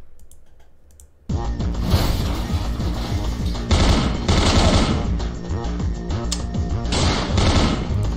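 An animated action cartoon's soundtrack starting abruptly about a second in: music with rapid gunfire over it as a character shoots at enemies.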